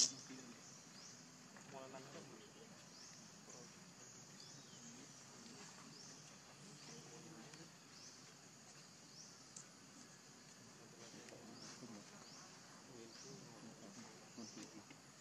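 Faint outdoor ambience: a high-pitched rising chirp repeats about once a second, over a low murmur, with a brief sharp sound right at the start.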